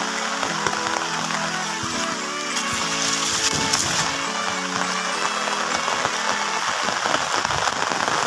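Background music of sustained notes over steady rain falling on a swimming pool and surrounding foliage. The music stops near the end, leaving the rain.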